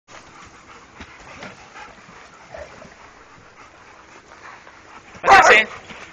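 A pack of dogs in a group play yard: low background noise of the dogs for about five seconds, then a loud, brief burst of barking.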